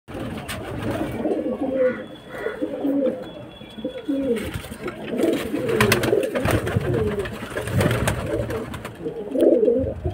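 A flock of domestic pigeons cooing together, many low, rolling coos overlapping one another without pause, with a few sharp taps among them.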